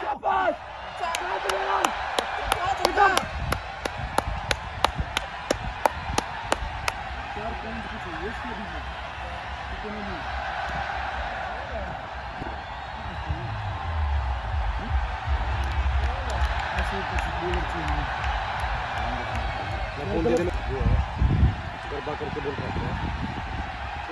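Players' voices calling across an open cricket ground. A rapid, even run of sharp clicks comes in the first several seconds, and low rumbling comes later.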